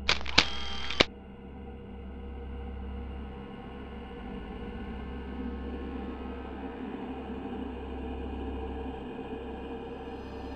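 A sudden loud burst of noise with sharp clicks lasting about a second, then a low, steady ambient drone of background horror music.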